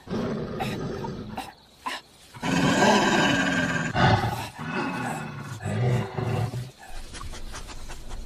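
A large animal growling and snarling as it attacks a man, mixed with the man's cries. It comes in suddenly and is loudest a few seconds in.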